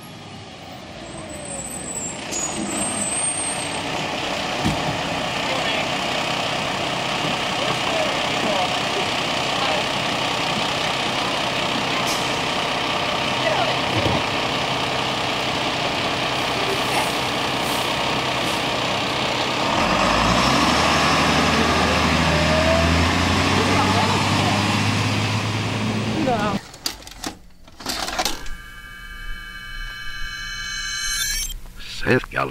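A school bus's diesel engine running, with faint voices, on the soundtrack of an old home videotape. About twenty seconds in, the engine's low note grows louder, then the sound cuts off abruptly a few seconds before the end, followed by clicks.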